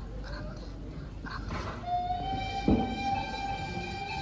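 A traditional Minangkabau wind instrument holds one long, steady note. The note comes in about two seconds in and slowly rises in pitch. A single sharp knock sounds just after it enters.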